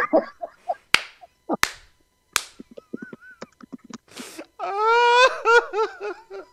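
Men laughing hard, with three sharp slaps in the first half, then a long, high drawn-out cry of laughter followed by choppy bursts of laughter near the end.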